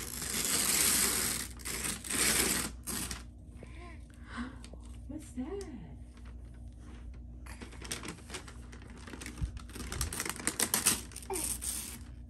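Wrapping paper being torn and crinkled off a gift in three bursts: one at the start, one about two seconds in, and a longer, choppier one near the end. A toddler's brief voice sounds come in the pauses between.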